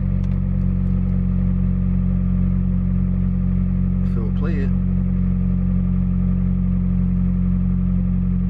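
Mitsubishi Lancer's engine idling steadily, heard from inside the car's cabin as a constant low hum. A brief voice sounds about halfway through.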